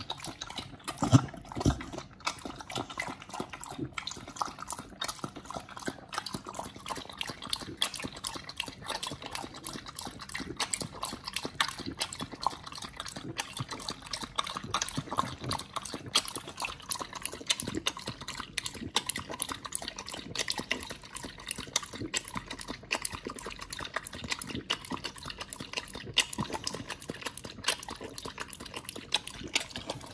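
Pit bull eating and lapping a wet raw meal and watermelon smoothie from a bowl: a fast, irregular run of wet mouth clicks, with a couple of heavier knocks about a second in.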